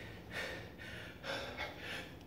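A man breathing hard from exertion while doing push-ups: a run of short, forceful breaths in and out, several in two seconds.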